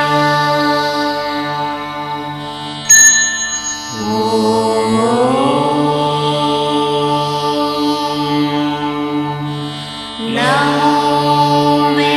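South Indian temple music: long held notes over a steady drone, each new phrase sliding up in pitch, about four seconds in and again near the end. A single bright ringing strike about three seconds in, like a bell, is the loudest moment.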